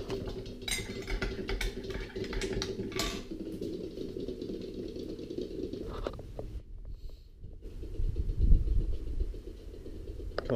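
Handling noise from a GoPro in its protective case being carried: rubbing and scattered clicks over a steady low noise, with a deeper rumble about eight seconds in.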